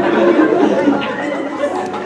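Overlapping voices and audience chatter in a large hall, with a few chuckles.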